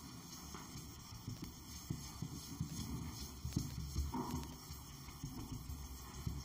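A whiteboard eraser wiped in quick strokes across a whiteboard: a faint, irregular run of rubbing scrapes and soft knocks.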